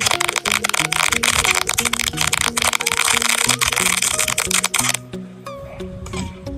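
Strings of small firecrackers going off in a rapid, dense run of cracks that stops suddenly about five seconds in, over background music.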